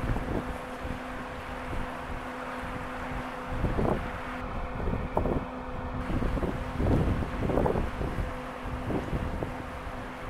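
Wind buffeting the microphone in gusts, with a faint steady hum underneath.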